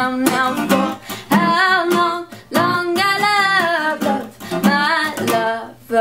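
A woman singing over a strummed acoustic guitar with a capo, her sung phrases broken by short pauses for breath while the strumming keeps on.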